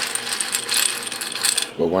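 Dry dog kibble rattling and clinking in a stainless-steel bowl as the bowl is shaken to coat the food with a powdered supplement. The rattle is a quick, dense run of small clicks that stops near the end.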